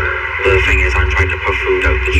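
A voice talking.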